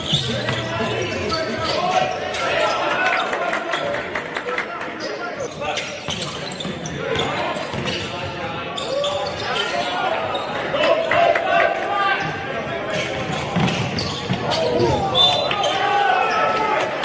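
A basketball being dribbled on a hardwood gym floor during live play, a run of sharp bounces, with voices calling out in a large echoing hall.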